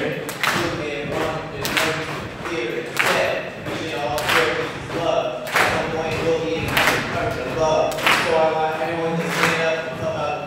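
A young man rapping into a handheld microphone over a steady beat, with a strong hit about every second and a quarter.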